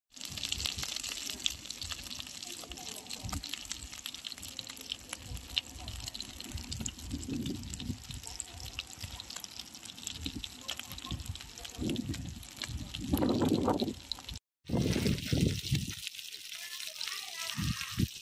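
Small river fish frying in oil in a cast-iron pan, the oil sizzling steadily with many fine crackles. There is an abrupt break about fourteen seconds in, and the sizzle is fainter after it.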